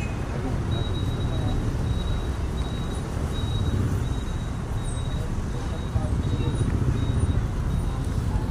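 Outdoor background noise: a steady low rumble with faint voices, and a faint high-pitched chirp repeating at a regular pace, about one and a half times a second.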